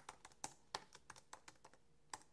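Faint typing on a computer keyboard: about a dozen light keystroke clicks at an uneven pace.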